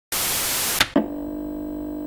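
Intro sound effect: a burst of TV static hiss that cuts off with a click, then a steady held electronic tone with several harmonics, starting about a second in.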